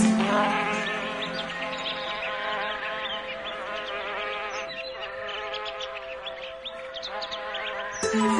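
Soft relaxation music of steady held tones, with many small birds chirping in quick short notes over it throughout.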